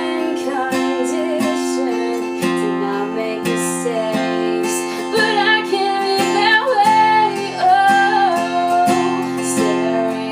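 Acoustic guitar strummed steadily, with a woman singing over it, her voice strongest in the second half.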